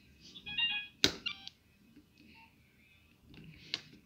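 Nokia 2600 classic mobile phone giving two short runs of electronic beeps, with a sharp click about a second in as the phone is handled, and a lighter knock near the end as it is set down on the table.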